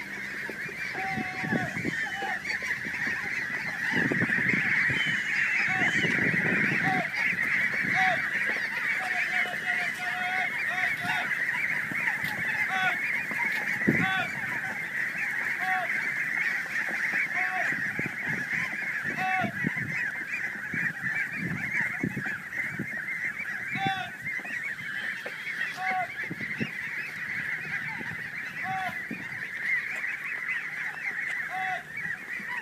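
A huge flock of domestic geese honking all at once: a steady, unbroken mass of overlapping calls with no pauses.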